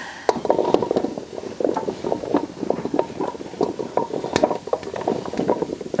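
Chunks of raw chopped pumpkin dropped by the handful into a roaster oven pan, a fast, irregular run of small knocks and clatters.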